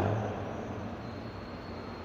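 A pause in speech: the last word dies away in the hall's reverberation, leaving a steady low hum and hiss of room background.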